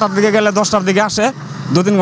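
Speech only: a man talking in Bengali into a handheld microphone, with a short pause about one and a half seconds in.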